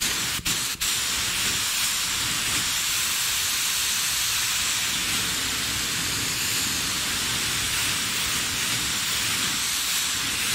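Compressed-air paint spray gun hissing steadily as it lays down candy purple paint, dropping out briefly twice just after the start.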